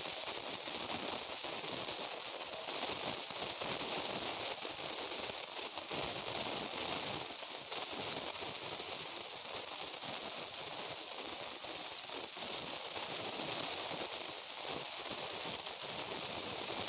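Steady high hiss of background noise with faint crackle, with no distinct events.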